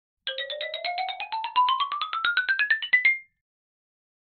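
Short electronic intro jingle: a fast run of bright, ringtone-like notes, about nine a second, over a tone that climbs steadily in pitch. It ends on a brief held high note about three seconds in.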